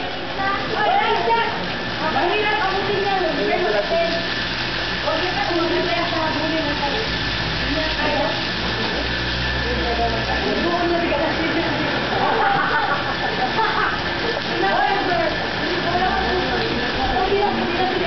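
A water spout pouring steadily into a swimming pool, a continuous splashing hiss, with people talking indistinctly over it.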